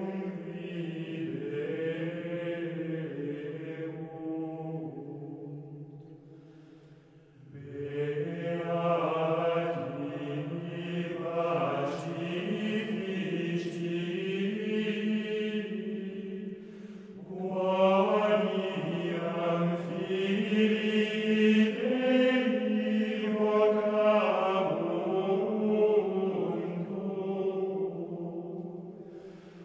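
Voices singing slow, sustained chant in long phrases, as background music. The singing fades to a pause about seven seconds in, then swells again.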